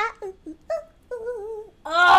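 A woman's excited wordless vocalising: a falling cry at the start, a few short yelps, then a wavering held tone, with a louder exclamation starting near the end.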